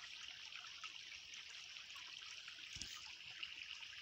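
Small woodland stream trickling over stones: a faint, steady babble of running water.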